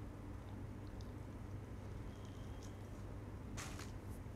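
Quiet room tone: a steady low hum with a few faint small clicks, and a short hissy rustle near the end.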